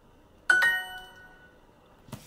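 Duolingo app's bright answer chime sounding once, about half a second in, and fading over about a second: the signal that the submitted answer was accepted as correct.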